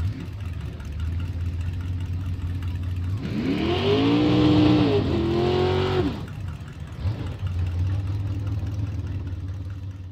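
Drag racing car's big Chevrolet V8 rumbling at a lumpy idle. About three seconds in it revs up hard and holds high revs for about two seconds with a brief dip, then drops back to idle.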